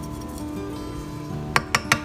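Three quick clinks near the end, a plastic measuring cup tapped against the rim of a glass measuring jug to knock out the last grated parmesan, over steady background music.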